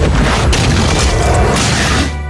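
Loud explosion sound effect, a long, deep blast with music underneath; it cuts off suddenly at the end.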